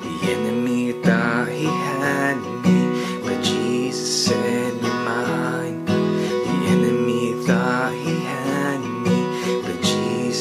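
Steel-string acoustic guitar with a capo, strummed steadily through a worship chord progression played with G-shape chords (G, Em7, Cadd9, D), sounding in the key of B.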